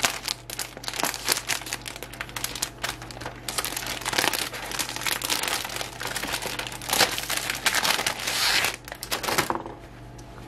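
Plastic packaging crinkling and rustling as it is handled and opened to get a folded cotton flour sack towel out, with a longer rustle near the end as the cloth slides free.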